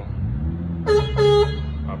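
Vintage Vespa 50 Special scooter's electric horn beeping twice about a second in, a short beep then a slightly longer one. It is sounded from the battery with the ignition on and the engine not yet running.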